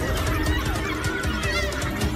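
A pack of African wild dogs giving high-pitched, wavering, twittering calls while mobbing a lion, over background music.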